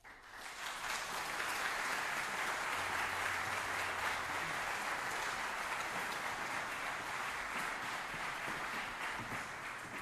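Theatre audience applauding: the clapping starts suddenly, builds within about a second into a dense steady applause, and tapers off near the end.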